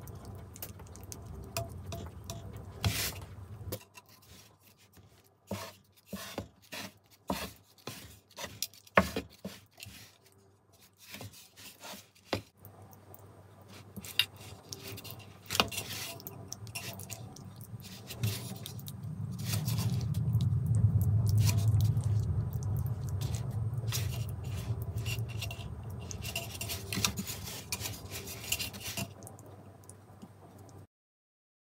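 Scrapes, rubs and sharp taps as hands work pie dough on a metal baking tray, sealing the top crust and cutting slits in it, with a quick run of taps in the first half. A low hum rises and fades in the second half.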